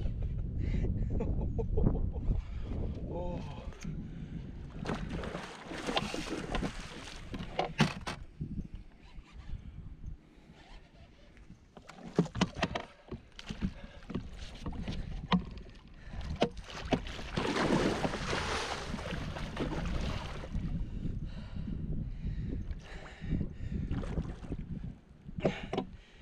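Water splashing and sloshing beside a small fishing boat, with two longer spells of splashing about five and seventeen seconds in, and scattered knocks against the boat.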